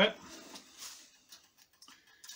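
Small scissors cutting a sheet of metallic hot-press foil: faint crinkling snips and a few small clicks.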